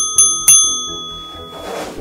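A bright bell chime struck in quick succession, strikes about a third of a second apart, ringing out and fading over about a second. A whoosh swells in right at the end.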